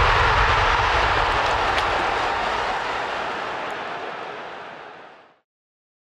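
A rushing noise effect from the logo outro, a steady wash with no pitch or rhythm, fading slowly and gone a little after five seconds in.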